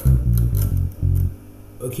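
Five-string electric bass guitar, finger-plucked, playing a quick phrase of several low notes that stops after about a second and a quarter.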